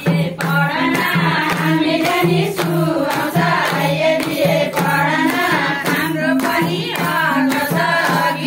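A group of women singing together in chorus, with a two-headed barrel hand drum keeping a steady rhythm and hands clapping along.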